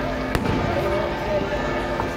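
A single sharp firework bang about a third of a second in, over the chatter of a street crowd.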